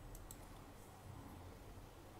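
Near silence: faint room tone with a few soft clicks in the first half-second.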